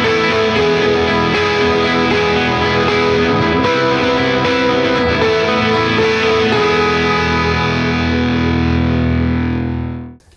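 Electric guitar played through distortion and effects pedals: a dense, sustained, heavily processed passage with long held notes that step in pitch about once a second, dying away right at the end.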